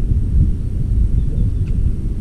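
Wind buffeting the microphone: a steady low rumble with no other clear sound.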